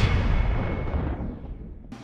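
Transition sound effect of a TV news logo bumper: a deep cinematic boom, its low rumble fading out over about two seconds.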